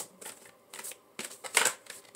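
Tarot cards being handled: a few short rustles, the loudest about three-quarters of the way through.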